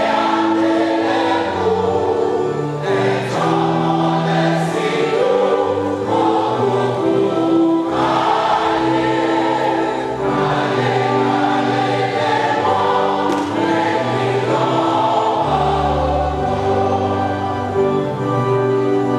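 A choir singing a gospel hymn over instrumental accompaniment, with held bass notes that change every second or so.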